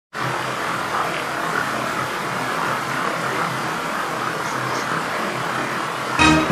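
A steady rushing noise with no tone or rhythm, starting abruptly just after the start and holding an even level throughout.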